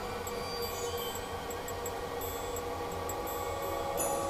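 Steady hum and whir of a room full of cryptocurrency mining machines and their cooling fans, with faint high-pitched electronic tones that come and go.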